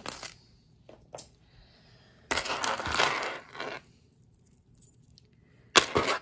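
Metal costume jewelry clinking and rattling as it is handled: a short clatter at the start, two light ticks about a second in, a jingling rattle of about a second and a half in the middle, and sharp clicks near the end.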